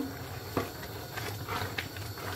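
Wooden spoon stirring chopped green peppers into a large stainless-steel pot of thick tomato sauce: soft scrapes and a few light knocks against the pot, over a low steady hum.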